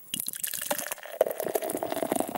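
Taproom background noise: a quick, irregular run of small clicks and clatter, with one sharper knock a little past the middle.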